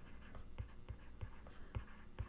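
Faint taps and light scratching of a stylus writing by hand on a tablet's glass screen, a series of small irregular ticks.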